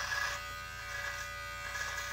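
Electric beard trimmer with a comb guard running steadily while held against the beard along the cheek and jaw.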